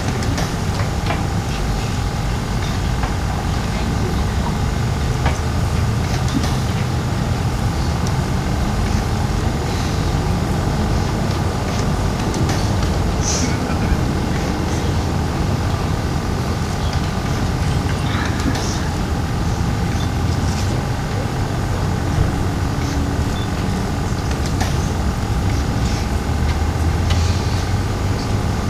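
A steady low mechanical rumble, like a running engine, with a faint steady hum and a few faint clicks over it.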